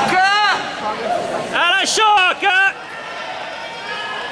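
Loud, high-pitched shouts without words: one short cry at the start, then a quick run of three or four cries between about one and a half and three seconds in, over the murmur of a large hall.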